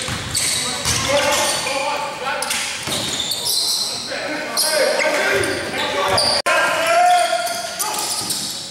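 A basketball game in a large gym: a ball bouncing on the hardwood court among players' voices and shouts.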